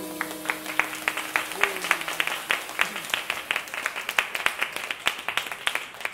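An audience clapping after a jazz trio's final chord, with the chord of electric guitar and double bass still ringing out and fading over the first couple of seconds. The claps are separate and distinct, like a small audience rather than a dense roar.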